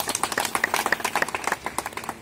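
A small group of people clapping by hand: many quick, uneven claps overlapping.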